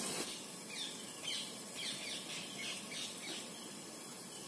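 A bird calling a run of short falling chirps, two or three a second, over the faint hiss of food frying in a lidded pan.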